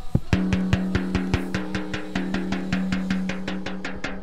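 The resonant (snare-side) head of a 14x6 maple snare drum, snares off and tensioned just above finger tight, tapped rapidly by hand. The taps come at about eight a second, each ringing with a steady low note.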